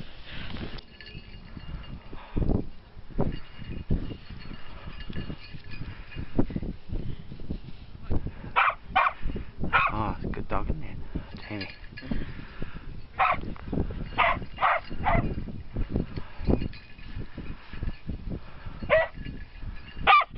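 A search and rescue dog barking in short bursts, several barks from about eight seconds in and more near the end, typical of a dog's bark alert on finding a hidden casualty. Wind gusts buffet the microphone throughout.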